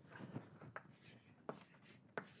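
Faint taps and scratches of chalk writing on a blackboard, a handful of short sharp strokes.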